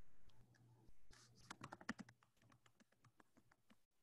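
Faint typing on a computer keyboard: a quick, uneven run of key clicks starting about a second in and thinning out near the end, over a low steady hum, picked up by a video-call microphone.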